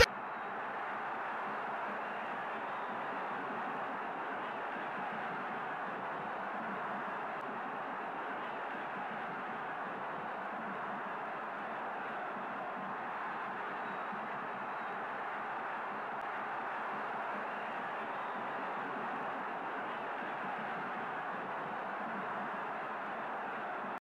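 Steady, even background noise with no speech or sudden sounds, holding at one level throughout.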